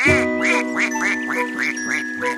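Duck quacks in a quick, even run of about four a second, over a held music chord.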